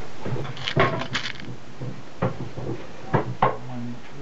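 Knocks and clatter of wooden frame battens and metal corner brackets being handled on a bench: a quick cluster of sharp knocks about a second in, then single knocks near two, three and three and a half seconds.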